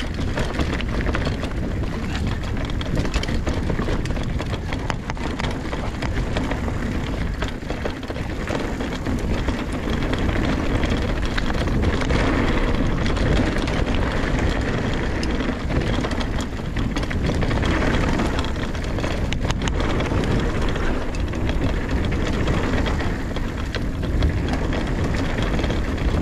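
Mountain bike riding fast downhill on a dirt trail: continuous tyre and trail noise with knocks and rattles from the bike over bumps, under steady wind rumble on the camera microphone.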